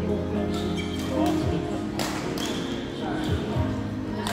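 Badminton rackets striking a shuttlecock during a rally, a light hit about half a second in and a sharp, louder one about two seconds in, ringing briefly in a large hall. Music and voices run underneath.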